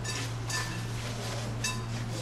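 Tableware clinking, three sharp ringing clinks (near the start, about half a second in, and near the end), over a steady low hum.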